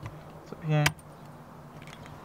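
A short hummed "mm-hmm" with a sharp click just after it and a faint click near the end, from a hand working the soft topper's metal frame bars; a low steady hum runs underneath.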